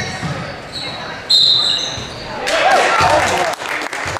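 Referee's whistle blowing a short, shrill blast a little over a second in, followed by shouting voices echoing in a gym.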